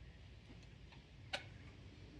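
A single sharp click about one and a half seconds in, with a couple of fainter ticks before it, over a quiet low background rumble.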